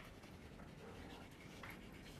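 Faint scratching of chalk writing on a blackboard.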